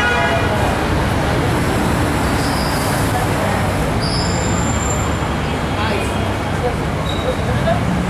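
Busy city street ambience: a steady wash of traffic noise with people talking in the background.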